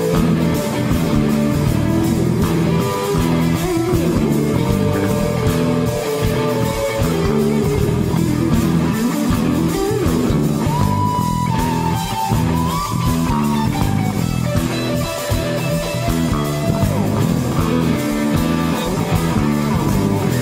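Live rock band playing an instrumental passage: electric guitars, bass guitar and drums play a repeated riff. About halfway through, a lead guitar holds a note and then bends it upward.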